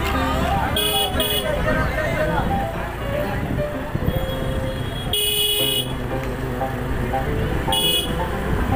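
Busy street crowd chatter with music playing, broken by a vehicle horn: two quick beeps about a second in, a longer honk just past the middle, and another beep at the end.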